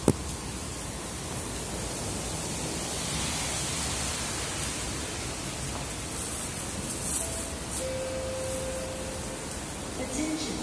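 Steady hiss of heavy rain falling, with a plastic bag crinkling briefly about seven seconds in.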